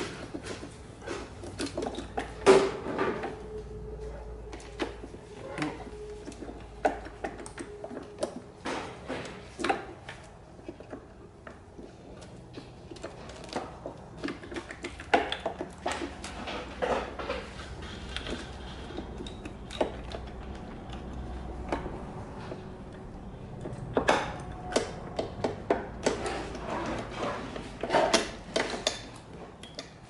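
Hand work on the top end of a two-stroke dirt bike engine: irregular metallic clicks, clinks and knocks of tools and engine parts being handled and pulled loose. The loudest knock comes about two and a half seconds in, followed by a faint ringing tone for several seconds.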